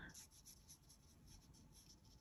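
Near silence, with faint repeated strokes of a fine paintbrush on kraft paper.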